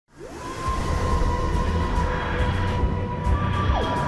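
Electronic intro music for a logo animation: a synth tone swoops up and holds steady over a deep rumbling bed, then a second tone slides down near the end.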